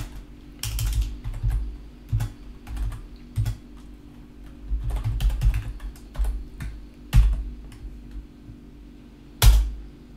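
Computer keyboard typing: irregular key clicks with low thumps, a few keystrokes in quick runs and pauses between them, and one loud keystroke about half a second before the end.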